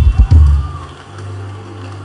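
Live worship-band music: a few heavy low hits in the first half second, then a low held note.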